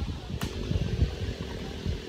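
Wind rumbling on the microphone, with a single sharp click about half a second in.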